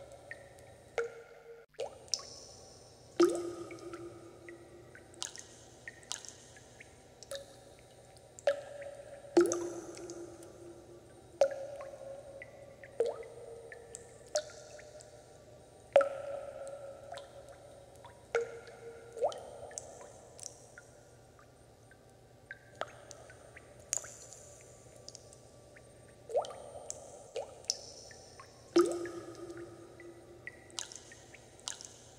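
Water drops falling one at a time into water, each a sharp plink with a short ringing note that fades quickly. They come irregularly, about one every second or so, some much louder than others.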